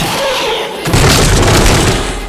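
A deep cinematic boom sound effect, of the kind used in dramatic Tamil film scenes, hits about a second in and carries on heavily.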